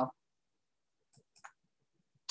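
A voice breaks off at the start, then a pause of near silence broken by a couple of faint, short clicks about a second and a half in.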